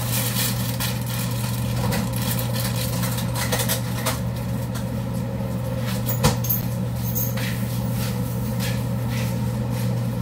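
Steady low hum of a running motor, with one sharp click about six seconds in.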